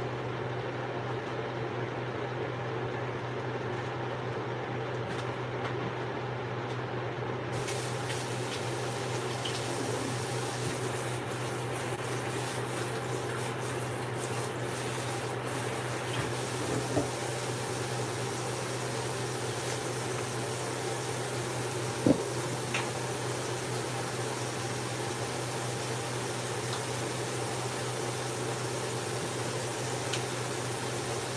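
Kitchen tap running steadily into a metal sink, the rush of water getting brighter about seven seconds in. Two light knocks come later, the second near the two-thirds mark.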